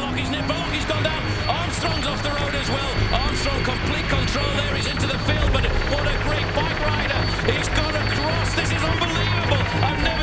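A dense mix of overlapping voices and music over a steady low drone.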